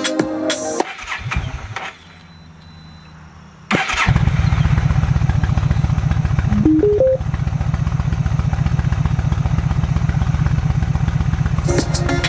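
Yamaha V Star 1300's V-twin engine starting about four seconds in and settling into a steady, low, pulsing idle. Music stops within the first second, a short rising run of four electronic beeps sounds over the idle about three seconds after the engine catches, and music comes back right at the end.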